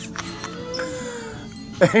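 A young girl whimpering in one long, wavering whine, a cry her father takes for fake crying; a man laughs near the end.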